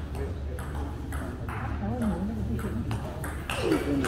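A table tennis rally: the celluloid ball clicking sharply off rubber paddles and bouncing on the table, a hit about every half second.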